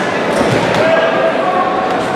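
Crowd shouting and calling out, with a couple of short thuds from the fighters in the cage, about half a second in and near the end.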